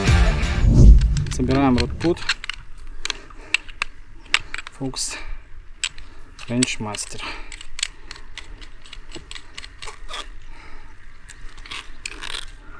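Music fades out about a second in; after that comes a run of light clicks and small metallic knocks as the telescopic metal legs and bars of a carp rod pod are handled and fitted together.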